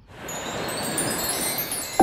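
Shimmering, chime-like musical swell that fades in over the first half-second and holds, the lead-in to a piece of background music whose notes begin just at the end.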